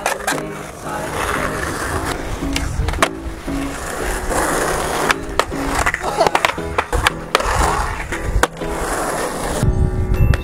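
Skateboard wheels rolling on concrete, with sharp clacks of the board popping and landing about a dozen times, over background music.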